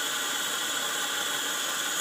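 Bathtub tap running, filling the tub: a steady, even rushing hiss of water heard from the plumbing behind the tub.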